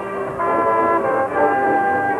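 High school marching band's brass playing held chords, growing louder about halfway through as the chord changes.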